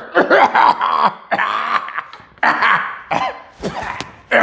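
A man coughing and clearing his throat in several separate bursts, running on from laughter.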